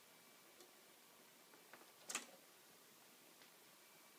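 Near silence: room tone, with a single short click about halfway through and a few fainter ticks.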